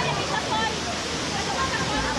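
Steady rush of a waterfall pouring into a rock pool, with scattered voices of people in the water over it.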